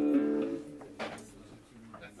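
A guitar chord rings steadily and is cut off about half a second in. A single brief strum of the strings follows about a second in, then it goes quieter.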